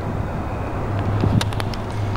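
A few quick metallic clicks from a socket wrench working the exhaust-to-manifold bolts, about halfway in, over a steady low hum and handling noise.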